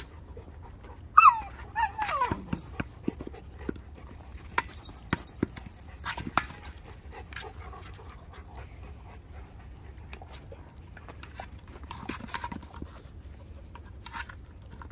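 A dog gives one loud whine about a second in, sliding down steeply in pitch, followed by scattered light knocks and scuffs as a puppy noses and pushes a large plastic egg-shaped ball over dirt.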